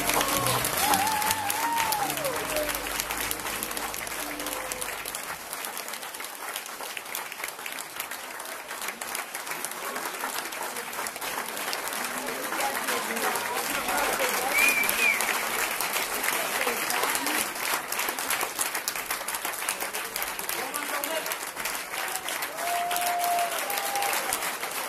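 Audience applauding and cheering, with a few shouts from the crowd; the band's last held chord fades out in the first few seconds.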